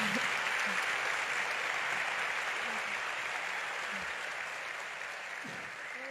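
Audience applauding, gradually dying away.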